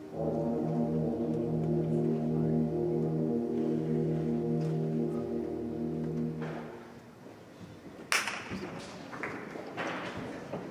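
School concert band holding a loud sustained closing chord with brass prominent, cut off about six and a half seconds in. About a second later the audience breaks into applause.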